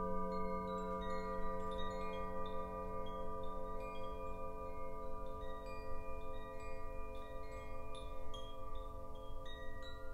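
Hand-held tube wind chime tinkling with scattered, irregular high notes, over the long, slowly fading ring of a large singing bowl struck just before.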